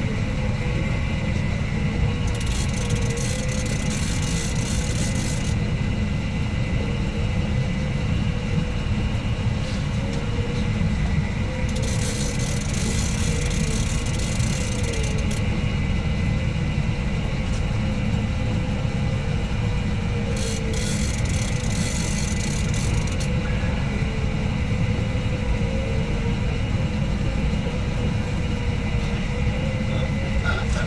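Boat engine running steadily under way with a low rumble and a wavering hum. Three spells of high hiss come about two, twelve and twenty-one seconds in.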